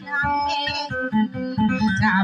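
Tausug dayunday music: a guitar plucked in a steady run of notes, with a woman's high singing voice over it.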